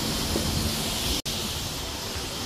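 Steady outdoor background noise, a rushing hiss with low rumble, broken by a brief sharp dropout just over a second in.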